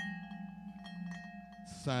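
Vibraphone notes ringing on and fading slowly, in a pause between spoken lines; a man's voice comes back near the end.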